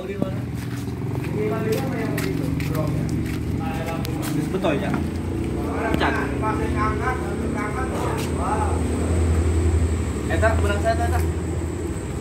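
Several people talking in the background, no words clear, over a steady low hum.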